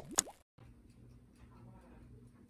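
A short pop with a quick upward glide in pitch, a transition sound effect under the "1" countdown graphic, followed by faint room sound with a low steady hum.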